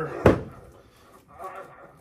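A single sharp thud about a quarter second in as the raised thoracic drop section of a chiropractic adjusting table drops under the chiropractor's thrust on the upper back.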